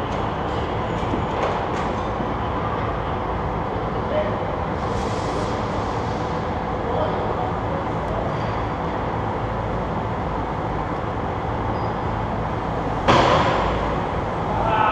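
Steady rumble and hiss of the ambience in a large indoor go-kart hall, with a sudden loud bump near the end.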